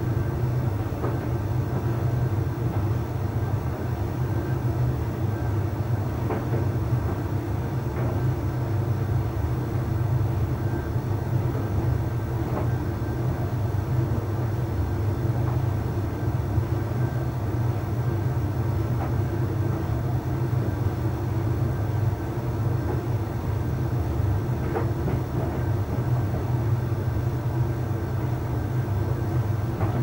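Arçelik 3886KT heat-pump tumble dryer running, with its inverter-driven drum turning and laundry tumbling: a steady low hum with a whirr above it and a few faint light ticks every few seconds.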